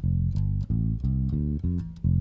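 Electric bass guitar played as a quick run of single plucked notes, roughly four a second, picking out notes in a D minor position.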